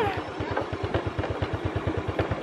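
Small motorbike engine idling close by, a steady low putter of about fifteen beats a second.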